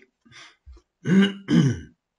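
A man clearing his throat: two short, loud voiced clears, one after the other, starting about a second in, with faint small noises before them.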